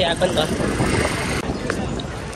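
Busy street ambience in a crowded pedestrian square: passers-by's voices in the first half second, then a steady rushing noise that cuts off about one and a half seconds in, with traffic mixed in.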